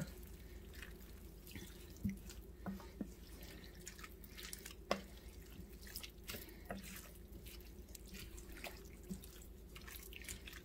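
Wooden spoon stirring a wet mix of diced tomatoes, meat and vegetables in an enamelled braiser: faint, irregular wet squelches and soft clicks of the spoon against the pan, the clearest about five seconds in.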